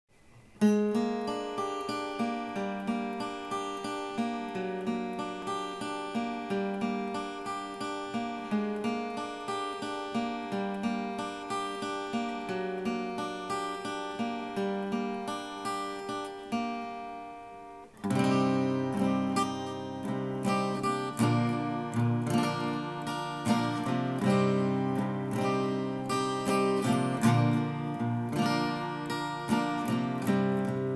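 Acoustic guitar playing a song's instrumental intro, plucked notes in a steady rhythm. About 17 seconds in it fades, then comes back louder and fuller with lower notes.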